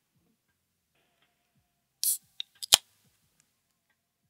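Near silence, then about two seconds in a brief rustle followed by three sharp clicks, the last the loudest.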